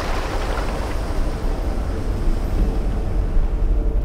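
Water washing over rocks, a hissing wash that thins out after about two seconds, over a deep, steady rumble.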